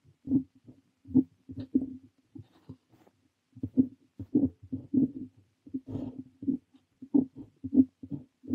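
Parker 45 fountain pen nib scratching across paper in short handwriting strokes, about two a second, with a brief lull about three seconds in.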